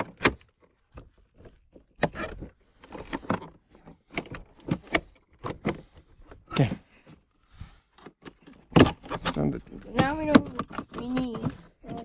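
Irregular light clicks, taps and scrapes of a small screwdriver and hard plastic trim being pried around a car's interior door handle and door panel, with a sharper knock just before the last few seconds.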